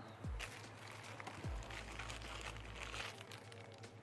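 Snack packets crinkling and rustling as they are handled at a shop counter, with a couple of soft thuds, over a steady low hum.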